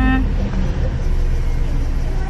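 Car engine running, heard from inside the cabin as a steady low rumble. A short vocal sound from the driver trails off right at the start.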